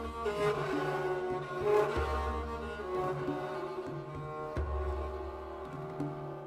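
Instrumental passage of a medieval troubadour song played on bowed strings: a held melody over long, low bass notes that sound and fall away several times.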